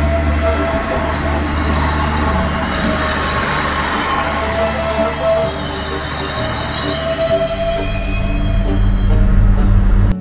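Passenger train moving along a station platform close by: a steady rumble with high ringing tones that come and go from the running gear. The rumble grows louder toward the end, then cuts off suddenly.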